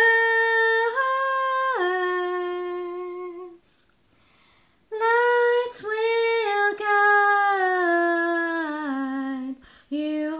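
A woman singing solo and unaccompanied, two long phrases of slow held notes with a short pause between them; the second phrase steps down in pitch.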